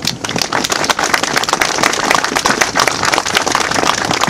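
Crowd applauding, many hands clapping steadily.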